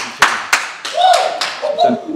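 Hands slapping together in handshakes, about three sharp slaps in the first half second or so, followed by a man's voice.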